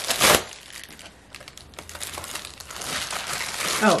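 A plastic padded mailer ripped open with a short, loud tear, then plastic packaging crinkling and rustling, growing louder near the end, as a plastic-wrapped item is pulled out.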